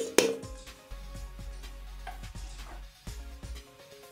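A metal spoon strikes an aluminium cooking pot twice in quick succession right at the start, sharp clinks. After that, background music plays with a few faint small knocks from the pot.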